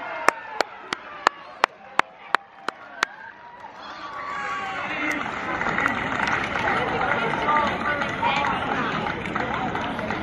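About ten hand claps close by, evenly spaced at roughly three a second, applauding a goal. They give way after a few seconds to a mix of voices talking and calling around the pitch.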